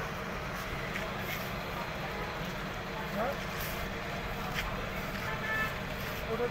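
Tyre-workshop din: a steady low rumble with faint voices in the background and a few short knocks.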